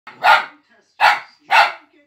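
A four-month-old fox terrier puppy barks three times in quick succession. The barks are short and sharp, each a little over half a second after the one before.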